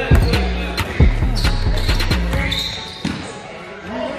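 A basketball being dribbled on a hardwood gym floor, a series of sharp bounces that thin out after about two seconds. Voices and low bass-heavy music sound underneath.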